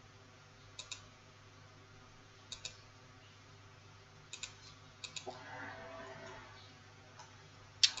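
Computer mouse buttons clicking faintly, mostly in quick pairs of press and release or double-clicks, four times spread out and once more near the end.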